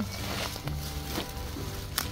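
Soft background music of sustained, held notes, the notes changing twice.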